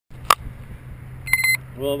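A sharp click, then about a second later a quick run of short, high electronic beeps, over a steady low hum.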